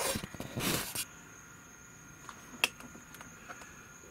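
Crickets chirping in a steady high-pitched trill. Two short bursts of rustling noise in the first second are the loudest sounds, and a single sharp click comes a little past midway.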